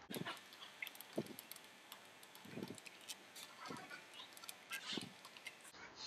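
Faint, scattered metallic clicks and light knocks, about one a second, from steel nuts being spun off the studs by hand on a pressure reducing valve's pilot assembly.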